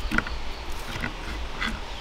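Knife cutting through an onion held in the hand, three short sharp cuts about 0.7 s apart, with the pieces dropping onto an earthenware plate.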